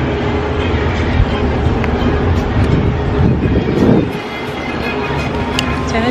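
Wind rumbling steadily on the camera's microphone outdoors, with a pop song playing faintly underneath; the rumble eases slightly about four seconds in.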